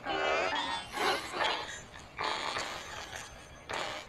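Garbled, electronically distorted voice audio, pitch-shifted and warped so that no words come through, in choppy segments that grow fainter toward the end.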